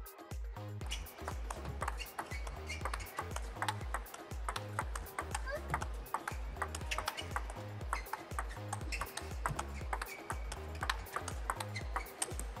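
Table tennis ball clicking off rubber bats and the table in quick, irregular succession through a long rally, over background music with a steady bass beat.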